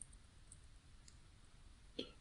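Near silence, with a faint click right at the start and another near the end.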